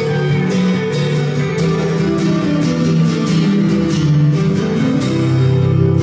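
Steel-string acoustic guitar strummed in a steady rhythm, with an electric guitar playing along: an instrumental passage between sung lines.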